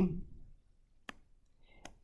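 Two short, sharp clicks under a second apart, made while highlighting on a computer screen, after a spoken word trails off.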